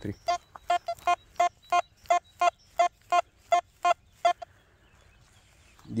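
Quest Q60 metal detector giving its target signal: a quick run of identical short beeps, about three a second, that stops about four and a half seconds in. This is its response to a 10-euro-cent coin at 5 cm depth, which reads 78 on its display.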